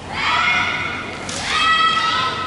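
Two long, high-pitched kiai shouts from female naginata performers during a kata: the first right at the start, held about a second, and the second about a second and a half in.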